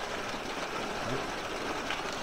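Water gushing from a water truck's large hose into an above-ground pool: a steady rushing splash of water.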